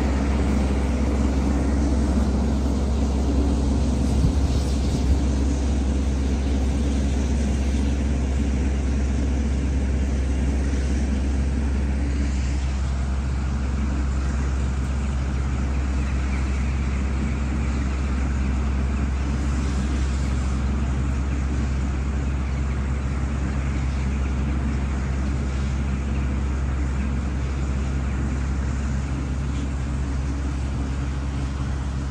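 Steady low drone of diesel construction machinery engines running, unbroken throughout.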